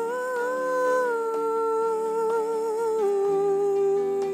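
A woman's voice singing a slow line without words: a long held note that steps down in pitch about a second in and again about three seconds in, wavering slightly. Soft sustained chords from a Yamaha S90XS keyboard accompany it, with a lower note coming in near the end.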